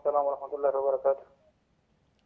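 Speech only: a person's voice talking, stopping a little over a second in.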